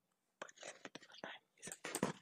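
Faint whispered speech: a voice muttering softly under its breath in short fragments.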